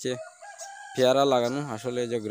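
A rooster crowing faintly in a short pause of a man's talk, one thin, slightly rising call under a second long, before the voice comes back loudly.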